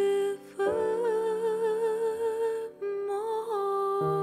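A female jazz singer holding long notes with vibrato over sustained piano chords: one note ends just after the start, then a long wavering note of about two seconds and a shorter one after it.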